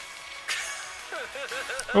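The subtitled anime's soundtrack playing at a low level: background music with a character speaking.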